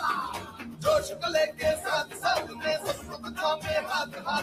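A Hindi pop song, sung over a steady beat.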